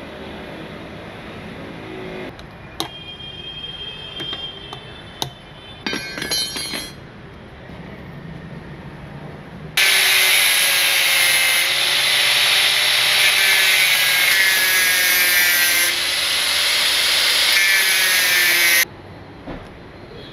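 A few knocks and clicks, then about ten seconds in an angle grinder starts cutting through the steel can of a spin-on car oil filter. The loud, steady grinding with a held whine runs for about nine seconds and stops abruptly.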